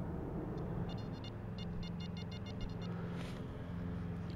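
A run of short, high-pitched electronic beeps, about four or five a second for roughly two seconds, from a metal detector signalling a target, over a steady low background hum.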